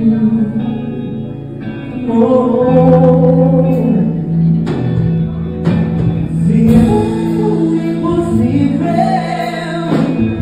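Live gospel song played back: a male singer holding long sustained notes over a band accompaniment, with two sharp hits near the middle.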